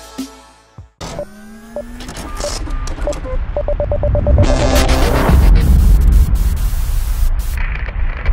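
Electronic logo sting. The end music fades out, then about a second in a crackly, glitchy build starts, with a rapid run of stuttering beeps midway. It swells to a loud, deep rumble before thinning out near the end.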